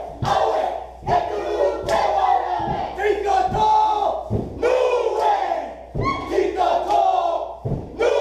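Polynesian dance troupe shouting a chant together in short, forceful phrases, broken by several heavy thumps.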